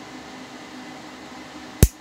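A single sharp snip of hand snippers cutting through the end of a laptop keyboard's flat ribbon cable near the end, trimming off its corroded contact edge.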